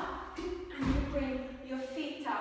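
A heavy low thud about a second in: bare feet landing a tuck jump on a foam floor mat, over held pitched notes of background music.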